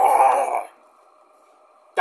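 A man's drawn-out growling roar, imitating a monster lunging out, which stops within the first second and leaves quiet room tone.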